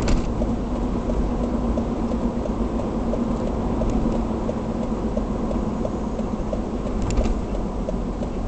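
Car engine and tyre noise heard from inside the cabin while driving at steady speed, a constant low hum with a faint regular ticking. Two brief knocks, one right at the start and one about seven seconds in.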